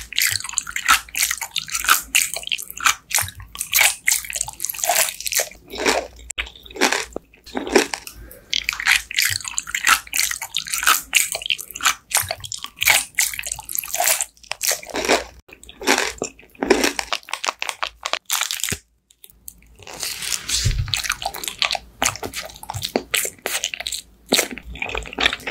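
Close-miked eating sounds: biting and chewing, with dense, crackly, wet mouth sounds and a short silent break a little past two-thirds of the way through.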